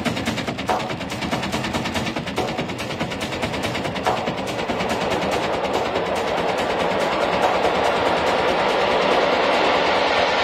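Techno track in a breakdown: a fast, rattling percussion loop with the kick drum and bass dropped out, building in the second half under a swelling noise riser.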